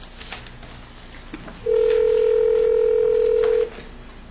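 Telephone ringback tone heard over a speakerphone: one steady ring of about two seconds starting near the middle. It is the sign that the outgoing call is ringing at the far end and not yet answered.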